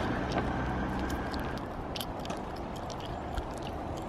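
Longboard put down and rolling on asphalt: a steady low rumble with scattered light clicks and taps from footsteps and the board's wheels.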